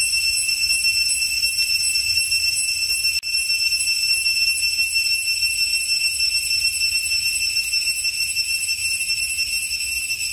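A steady, high-pitched whining drone of several pitches held together, briefly cutting out about three seconds in.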